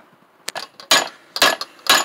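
Hammer striking a flattened 3/4-inch copper tube laid across a bench vise: four sharp metallic blows about half a second apart, the first lighter, some with a brief high ring. The blows are flattening out a slight curve in the copper to make a bus bar.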